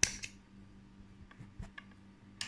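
Small handheld thread snips cutting embroidery floss: a sharp snip right at the start and a second one a moment later, followed by a few faint clicks.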